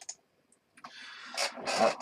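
After a short quiet moment, plastic and fabric rustling and scraping as a head-mounted magnifier visor with a strap is taken out and handled.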